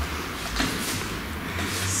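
Boots stepping and scuffing on a wooden stage floor as a dancer turns: a soft thump and a brief scuff about halfway through, over a steady low hum.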